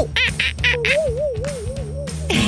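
A man imitating a monkey with his voice: a few short squeaky calls, then a wavering hoot that rises and falls about four times, over background music.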